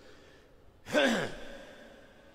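A man's voice making one short vocal sound about a second in, falling steeply in pitch and fading out, between otherwise quiet pauses.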